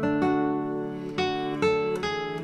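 Background music: acoustic guitar playing plucked chords, each ringing on and fading before the next.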